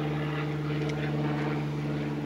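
A steady machine hum: one low, unchanging tone with overtones, as from a motor running continuously. A faint click comes about a second in.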